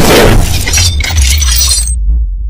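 Intro sound effects: a loud shattering, glassy crash with crackling debris over a deep bass. The crash cuts off at the very end, leaving only the bass.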